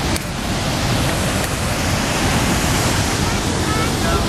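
Niagara Falls: a loud, steady rush of falling water, with wind buffeting the microphone.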